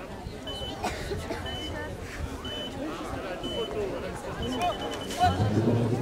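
Spectators talking and murmuring around the ring. A short, high electronic beep sounds about once a second, turns into a quick string of beeps near the end, and then a louder voice comes in.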